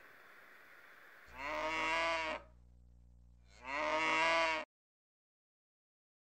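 A cow mooing twice, each call about a second long with a gap of about a second between them; the sound cuts off abruptly after the second moo.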